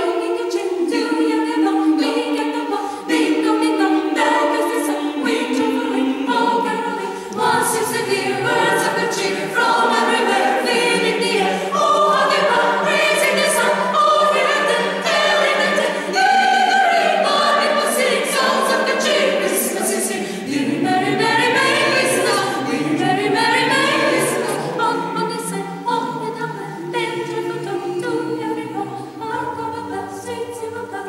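Mixed choir of men and women singing unaccompanied in several parts, holding sustained chords. Lower voices come in about seven seconds in.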